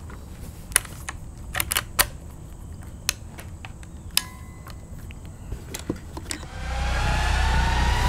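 Scattered light clicks and knocks as a Marlin 444 lever-action rifle is handled and settled on a bench shooting rest, with no shot fired. About two-thirds of the way in, a whoosh with a climbing tone swells in and grows louder toward the end.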